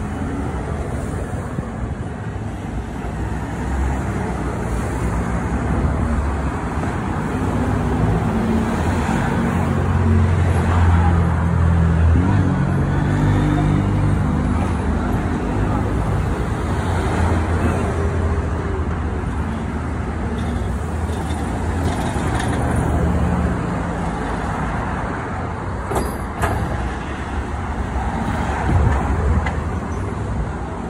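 Road traffic on a city street: vehicle engines and tyres running past with a low rumble. It grows louder through the middle and eases off toward the end.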